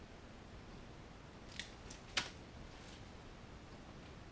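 Disposable exam gloves being peeled off, with two short snaps about a second and a half and two seconds in, over quiet room tone.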